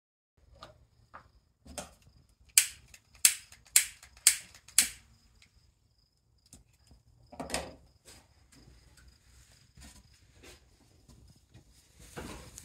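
A run of five sharp clicks about half a second apart, then a duller knock and quieter tapping and handling from small objects being worked on a wooden workbench.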